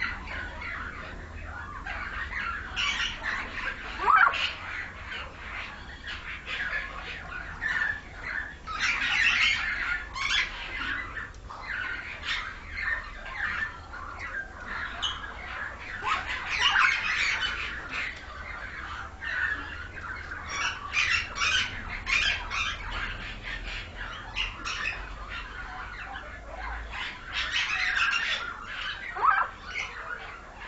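Pied myna (Asian pied starling) calling without a break: a chattering run of harsh squawks and short notes, with a few rising whistled glides, the loudest about four seconds in.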